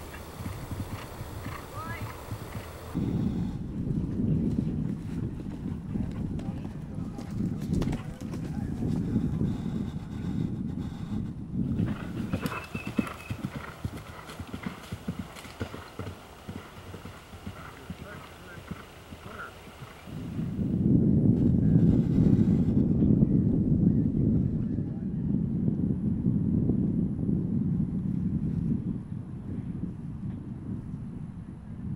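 A horse galloping on grass, its hoofbeats thudding in a steady run; they are loud from about three seconds in and louder still from about twenty seconds in.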